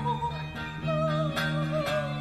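Live acoustic string music: a fiddle melody with wide vibrato over steady plucked upright-bass notes, with a note attack roughly every half second.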